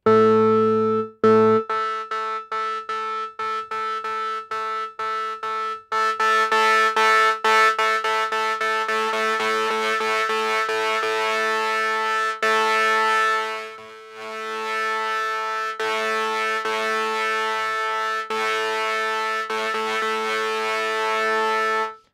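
Bitwig FM-4 synthesizer patch, built from sine partials tuned to harmonic ratios, sounding through distortion: one low note with a dense stack of overtones. For the first few seconds it is struck in quick repeats about three times a second; after that it is held and gets brighter and buzzier on top as the high-band distortion is brought in, dipping briefly near the middle.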